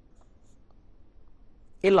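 Faint strokes of a felt-tip marker writing on paper, followed near the end by a man's voice starting to speak.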